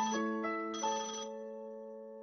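Mobile phone ringtone: a quick melody of bell-like notes that ends about a second in, its last notes ringing on and fading away.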